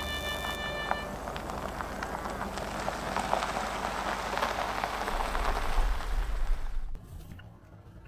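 A Mazda SUV driving up a country road, its tyres hissing and crackling on the asphalt louder and louder as it nears, with a low engine rumble as it comes closest; the sound cuts off abruptly about a second before the end. Background music fades out in the first second.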